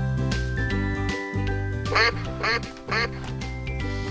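Three quick duck quacks about half a second apart, around the middle, over cheerful children's background music that plays throughout.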